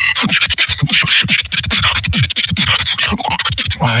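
Human beatboxing into a microphone: a fast rhythm of kick-drum thumps that drop in pitch, hissed snares and hi-hats, and sharp mouth clicks.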